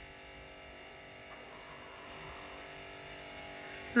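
Faint steady electrical hum with a buzz of several even, unchanging tones.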